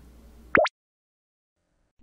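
A short 'plop' transition sound effect about half a second in: one quick upward pitch sweep, rising from low to very high in about a tenth of a second.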